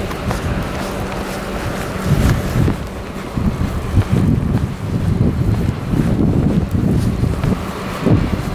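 Wind buffeting the microphone in irregular gusts, much heavier from about two seconds in.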